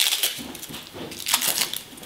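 Dry, papery outer skin being peeled off a half head of garlic by hand: a few short crackles and rustles.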